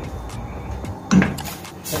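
Light clicks and knocks of a utensil against a stainless steel cooking pot as coconut-milk liquid with kidney beans is stirred, with one louder knock a little after a second in.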